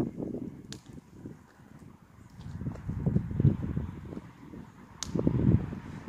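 Gusts of wind buffeting the microphone in three uneven swells, with two sharp clicks, one about a second in and one near the end.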